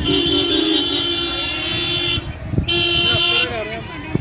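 Vehicle horn honking: a long, steady honk for about two seconds, a brief break, then a shorter honk, over crowd voices.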